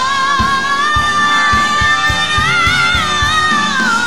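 Live gospel band: one long held melody note with vibrato that sways and slides down near the end, over a steady drum beat.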